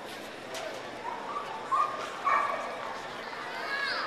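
A dog yipping: two short sharp yips a little under two seconds in, then a high call that falls in pitch near the end.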